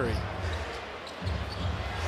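A basketball bounced on a hardwood court over a steady arena crowd murmur.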